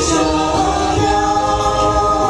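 A group of voices singing a Vietnamese quan họ folk song, holding long drawn-out notes that slide gently from pitch to pitch.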